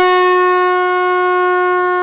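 A blown horn sounding one long, loud note held at a steady pitch, part of a series of long blasts separated by short breaths.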